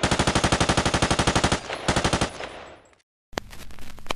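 Automatic gunfire in rapid bursts, about ten shots a second: a burst of about a second and a half, then a short second burst that dies away. After a brief gap, a few sharp clicks come near the end.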